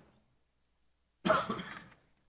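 One short cough, a little over a second in.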